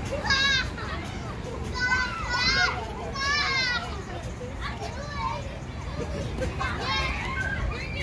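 Children at play on a playground, calling and shouting in high voices in several bursts, about half a second in, around two to four seconds in and again near the end, over a steady low background rumble.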